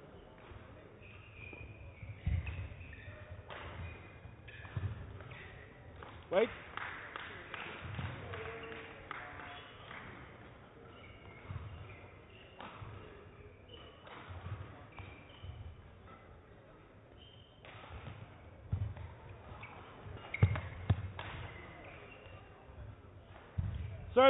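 Badminton rally: sharp racket strikes on the shuttlecock at irregular intervals, thuds of the players' feet landing on the court, and short shoe squeaks.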